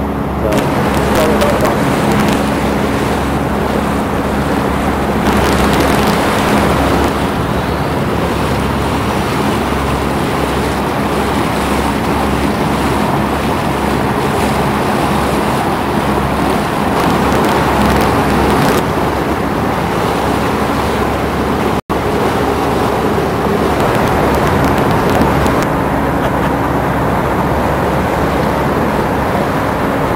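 Steady wind rushing over the camcorder microphone and water washing past the hull of a sailboat under way, with a low steady hum beneath it. The sound drops out for an instant about two-thirds of the way through.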